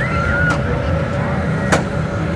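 Steady low machine hum with a thin steady whine from a Spider ride's machinery while the ride stands still, with distant voices rising and falling over it. A single sharp click comes near the end.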